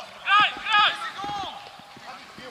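Two short, loud, high-pitched shouted calls from a footballer on the pitch, about a third of a second and three quarters of a second in.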